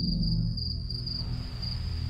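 Crickets chirping in a steady pulsing trill, laid over a low droning music bed that drops back about half a second in.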